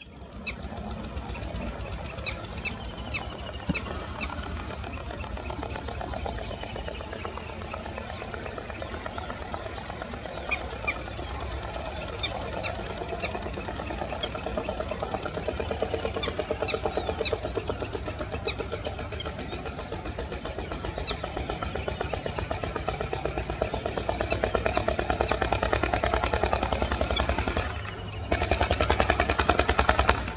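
Green sandpiper calling: series of short, sharp, high-pitched notes repeated in bursts, with pauses between the bursts. A steady low hum runs underneath.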